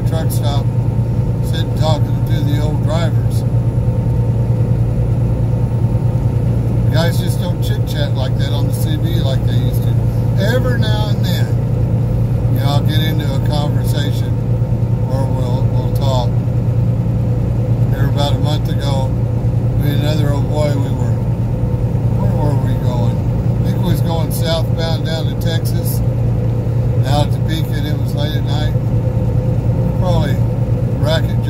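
Steady low drone of a semi truck's engine and road noise heard inside the cab at highway speed. Voices come and go over it and cannot be made out.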